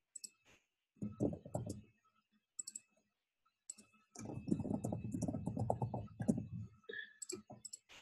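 Computer mouse clicks and typing on a keyboard: a few scattered clicks, then a quick run of keystrokes about four seconds in, lasting a couple of seconds.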